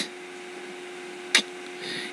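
Quiet room tone with a steady low electrical hum, broken once by a brief click about a second and a half in.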